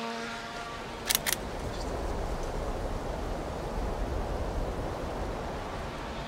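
Faint buzz of a drone's propellers, a steady hum with several pitches together, fading out after about a second. Wind buffeting the microphone then takes over as a low rumble.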